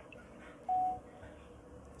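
A single short electronic beep, one steady mid-pitched tone lasting about a third of a second, starting well under a second in, over faint room tone.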